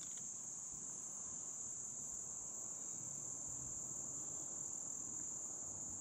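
Insects singing in a steady, unbroken, high-pitched chorus.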